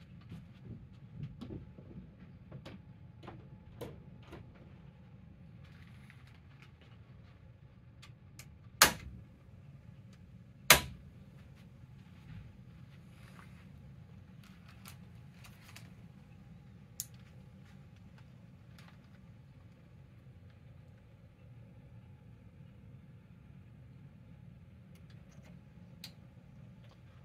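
Circuit breakers being switched on: two sharp snaps about two seconds apart, with a few lighter clicks in the first few seconds and another near the end, over a faint low hum.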